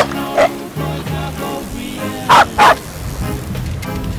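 Small dog barking in two pairs of short, loud barks, one pair at the start and one a little past two seconds in, over background music.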